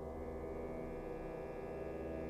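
Orchestral music: a soft, sustained chord of many held tones, with a higher, brighter layer coming in at the start.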